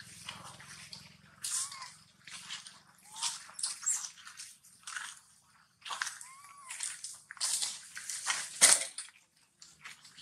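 Irregular crackling and rustling of dry leaves and gravel as feet move over the ground, with a sharper crunch near the end. A few short, faint squeaky calls from macaques come through now and then.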